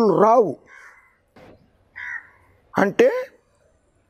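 A crow cawing twice, two short harsh calls about a second apart, quieter than a man's speech that comes before and after them.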